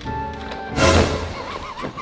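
A horse neighing, a comic sound effect laid over the footage: a sudden loud start about a second in, then a quavering call that trails off, with background music.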